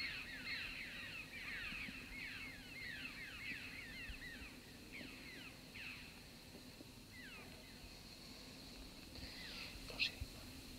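Small birds calling faintly: a rapid run of short, high, downward-sliding chirps for about six seconds, then a few scattered chirps near the end.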